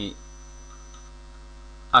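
Steady electrical mains hum: a set of fixed low tones held at an even level, with a faint high whine over it that stops about a second in.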